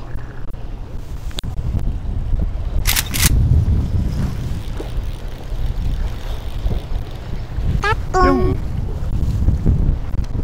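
Wind buffeting the microphone on a small boat in a choppy sea: a heavy, fluttering low rumble with a steady low hum beneath it. Two sharp clicks come about three seconds in, and a brief voice near the end.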